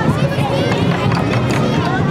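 Crowd chatter: many voices talking at once, with higher children's voices standing out over a steady low background din.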